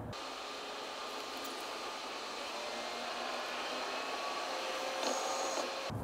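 Steady tyre and wind noise heard inside a 2025 Ram 1500's cabin at highway speed, growing slightly louder toward the end.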